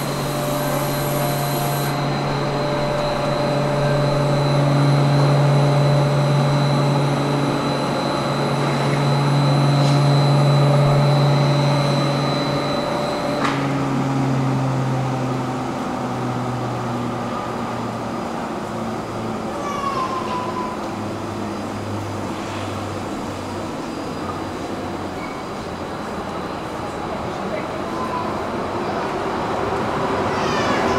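Electric double-deck CityShuttle train standing at the platform, its electrical equipment giving a steady low hum with a thin high whine. The whine cuts off suddenly about halfway through, after which the hum falls in pitch in several steps. Near the end the train begins to pull away.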